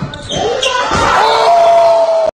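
A basketball bouncing on a gym floor, then excited shouting that rises into one loud, high, held yell over the last second.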